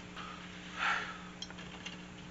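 Faint handling of a plastic blaster shell: a brief soft rustle about a second in and a couple of light clicks, over a low steady hum.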